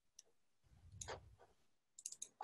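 Very faint computer keyboard keystrokes, a few scattered clicks as keys are pressed to delete text, the loudest about a second in with a soft low thud.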